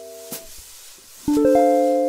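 Guitar playing a C7 to F6 perfect cadence. The ringing C7 chord is cut short just after the start, and about a second later the F6 chord comes in with its notes rolled quickly from low to high, then rings on. A short click sounds about once a second, keeping time.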